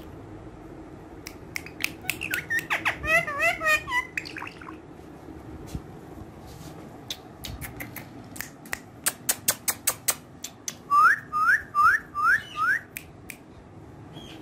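Indian ringneck parakeet clicking sharply in two runs, with a burst of warbling whistled notes early on, then five short, rising whistled chirps in quick succession near the end.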